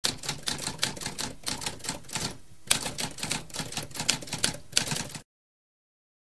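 Manual typewriter keys clacking in quick succession, with a short pause about two and a half seconds in. The typing stops abruptly a little after five seconds in.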